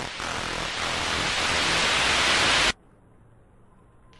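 A white-noise riser, a hiss that swells steadily louder, cuts off suddenly about two-thirds of the way through and leaves a second or so of near silence before the music drops in.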